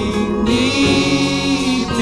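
Gospel song sung by a small group of vocalists at microphones over instrumental backing, with one long held note through the middle.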